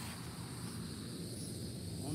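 Steady high-pitched chirring of insects in the grass, with a low rumble underneath.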